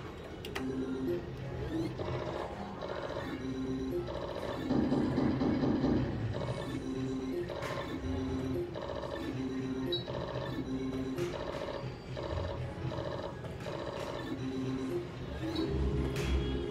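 Book of Ra Classic slot machine playing its electronic win jingle, a short phrase of tones repeated over and over, after a five-of-a-kind line win.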